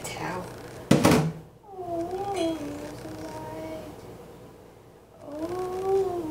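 Dishes clattering in a kitchen sink once, loudly, about a second in, followed by long, wavering high-pitched vocal notes that come again near the end.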